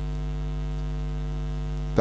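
Steady electrical mains hum on the sound system's audio feed: a low, unchanging buzz made of several steady tones.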